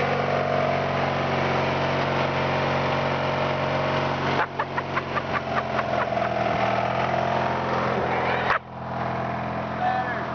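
Riding lawn mower engine running steadily. Midway there is a quick run of sharp clicks, about six a second for a second and a half, and near the end the sound drops suddenly.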